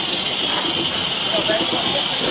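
BR Standard Class 4 2-6-4T steam tank locomotive standing in steam, with a steady hiss of escaping steam.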